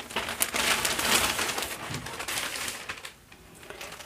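Clear plastic pattern sleeves and a paper envelope crinkling and rustling as a bundle of cross-stitch charts is handled; the crackle dies down about three seconds in.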